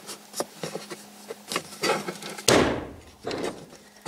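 Hand handling and pulling the Ford Explorer's plastic bonnet release lever in the driver's footwell: a series of light clicks and knocks, then a louder clunk about halfway through.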